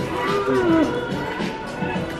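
Shop background music playing steadily, with a drawn-out sliding tone that rises and falls about half a second in.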